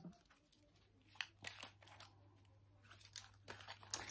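Faint rustles and light snaps of Lenormand cards being handled, laid down and gathered up, a few short ones about a second and a half in and more near the end, over a faint low hum.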